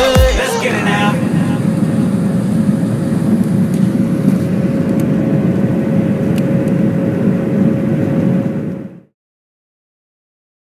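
Airliner cabin noise heard from a window seat: a steady low engine rumble with a steady whine over it, cutting off suddenly near the end. A music track fades out in the first second.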